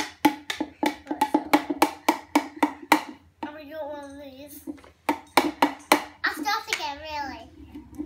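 Plastic toy egg knocked rapidly against a plastic jug, about five knocks a second, in two runs: play-acting cracking an egg. A young child's voice comes in between the runs and near the end.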